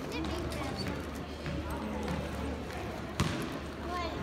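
A basketball bouncing on a hardwood gym floor, with spectators talking in the stands; one louder thud about three seconds in.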